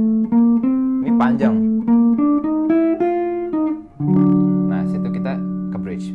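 Archtop electric guitar playing a fast single-note jazz line, about three notes a second. About four seconds in it settles on a held low note that rings on.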